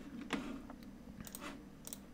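A few faint clicks from a computer mouse and keyboard: one about a third of a second in, one near the middle and a quick pair near the end.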